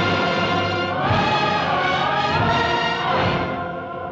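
Orchestral film score with a choir singing sustained, swelling lines over the orchestra. It softens near the end.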